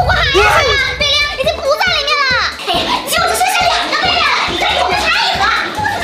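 High-pitched, excited speech over background music with a low repeating beat.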